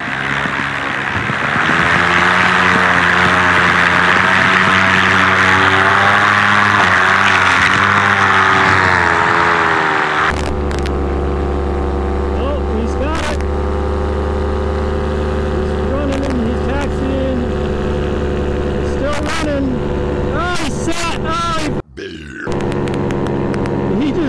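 Paramotor engine and propeller running hard at high throttle, then after a sudden change a little past ten seconds a paramotor engine running steadily at a lower, deeper pitch.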